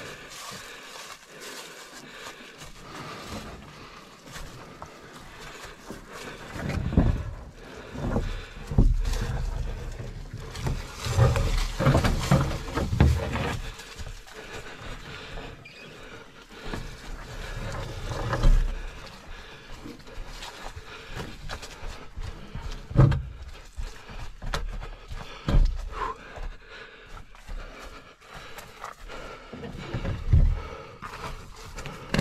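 Footsteps and handling noise of a canoe carried overhead on a portage trail: irregular low thuds and knocks as the hull shifts on the carrier's shoulders.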